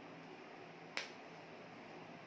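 A single sharp click about a second in, over a steady low hiss.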